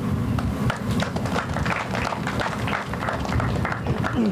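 A small crowd applauding, a dense patter of many hands clapping, over a steady low rumble.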